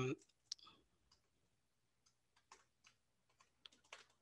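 Faint computer-keyboard typing: a single key click about half a second in, then a loose run of scattered key taps over the last second and a half.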